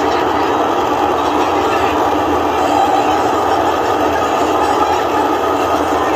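Steady, loud roar of the Super Heavy booster's Raptor engines as Starship lifts off, a dense rumble that holds at an even level throughout.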